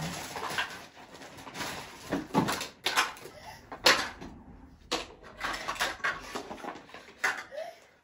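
Plastic toy parts and packaging being handled: a handful of sharp knocks and clatters spread out, with plastic rustling between them.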